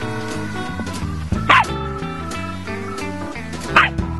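Two short yips from a small dachshund, one about one and a half seconds in and one near the end, each falling in pitch, over background guitar music.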